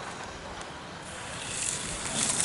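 Skis carving on packed snow: the hiss of the edges scraping grows louder in the second half as the skier comes close, over a steady outdoor rush.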